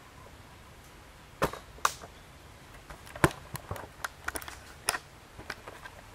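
Irregular sharp knocks and clicks, starting about a second and a half in, the loudest about three seconds in, with a quick run of smaller ones after it: handling and movement noise in a small room.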